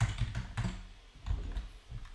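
Typing on a computer keyboard: an uneven run of separate key clicks.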